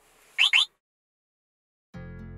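Two quick electronic chirps, each a short rising tone, from the Jaguar I-Pace's dashboard electronics as a hand touches its controls.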